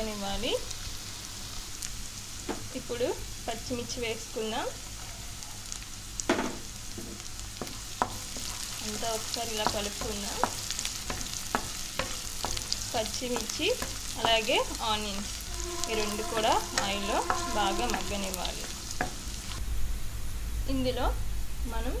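Chopped onions, whole spices and green chillies sizzling in hot oil in a pan, with a wooden spatula stirring and scraping against the pan in short strokes. Short pitched sounds come and go in the background.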